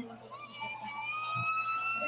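A siren's wail, its pitch climbing slowly and steadily as it winds up.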